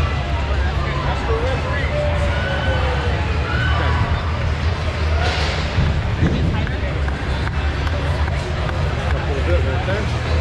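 Busy indoor event background: crowd chatter and scattered voices over a steady low hum, with a brief hissy burst about five seconds in.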